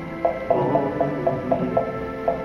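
Acoustic guitar strumming under a small red hand-held percussion instrument played with a mallet, giving a steady run of pitched clicks about four a second.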